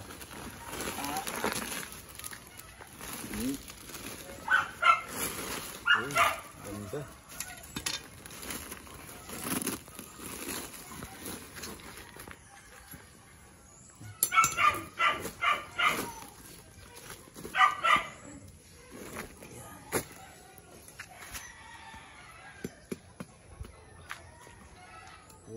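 A dog barking in three short bouts of quick, repeated barks.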